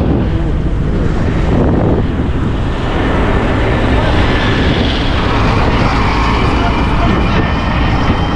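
Road traffic passing close by: the engines of a minivan and heavily loaded trucks running as they drive past, in a loud continuous rumble. A thin steady high whine joins about three seconds in.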